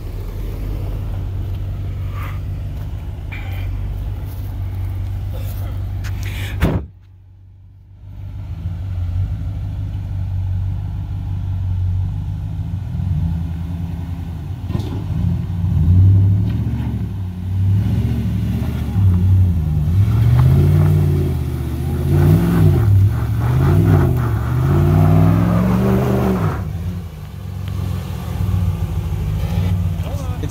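Off-road vehicle engines: a Hummer H3's engine running steadily at low revs, then, after a short quiet break about seven seconds in, a pickup truck's engine revving up and down again and again as it climbs a steep rocky rut.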